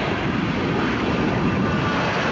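Lockheed F-117A Nighthawk's twin jet engines at takeoff power as it lifts off and climbs out: a steady rushing jet noise with a faint whine.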